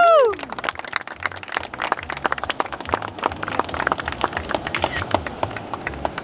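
A small group of onlookers clapping their hands, uneven handclaps going on for several seconds. In the first half second, a loud held cheer from one voice falls away and stops.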